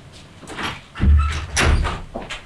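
A door being pushed shut, with a heavy thud about a second in and a second one soon after.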